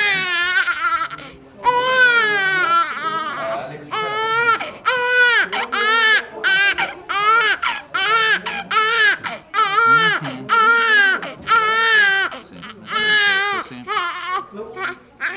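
A 17-day-old infant crying hard: two long wails near the start, then a steady run of shorter high-pitched cries about one a second.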